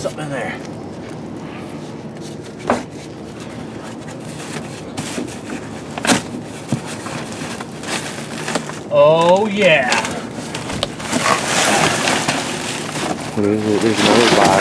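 Rummaging through dumpster trash: plastic bags rustle and crinkle, with two sharp knocks a few seconds apart and louder, busier rustling in the last few seconds. A person's voice sounds briefly about nine seconds in and again near the end.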